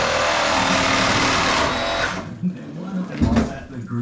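Cordless reciprocating saw cutting into an old boiler and its pipework, a steady harsh buzz that stops about two seconds in. A man's voice and a single knock follow.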